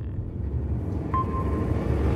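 Logo-animation sound effect: a low rumbling whoosh that builds steadily in loudness, with a short steady beep tone coming in about a second in.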